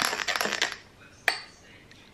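A metal spoon stirring and clinking in a tall glass, then a single sharp clink of the spoon against the glass a little over a second in.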